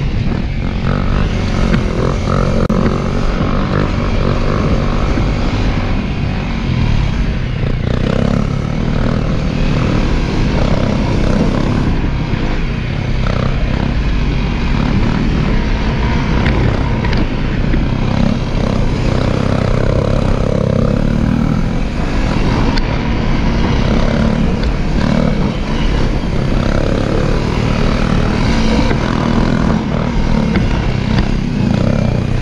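A Honda dual-sport dirt bike's single-cylinder engine, heard from on board, pulls steadily under load as the bike climbs a dirt track. The engine note stays loud and even, without big revs up or down.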